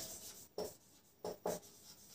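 Marker pen writing on a whiteboard: a few short, faint strokes, one about half a second in and two close together around a second and a half.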